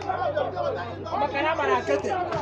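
Crowd chatter: several people talking at once, their voices overlapping, over a steady low hum.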